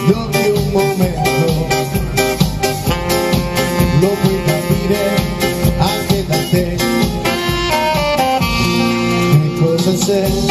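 Live band music with saxophone and keyboard over a steady beat.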